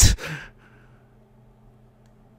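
A man's loud breathy exhale into the microphone, a sigh at the end of a laugh, lasting about half a second. After it comes only a faint steady electrical hum.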